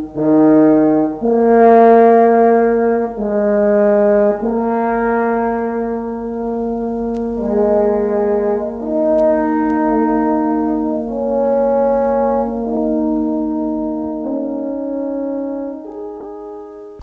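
French horns playing a slow passage of held notes in harmony, the chord changing every second or two and fading out near the end.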